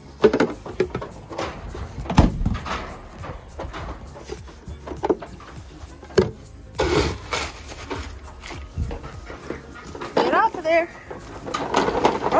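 Grain feed being scooped from a feed bin, among knocks and clatter. Goats bleat near the end.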